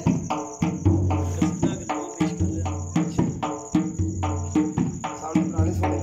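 Qasida chanted to a quick, even percussive beat, over the steady chirring of crickets.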